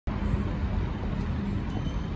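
Steady low outdoor rumble like background street traffic.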